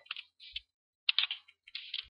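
A few short clusters of quick clicks from a computer keyboard and mouse, the densest run a little after one second in.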